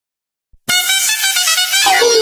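Air horn sound effect of a DJ remix: one steady, held horn blast that starts suddenly after silence about two-thirds of a second in. The music comes in near the end.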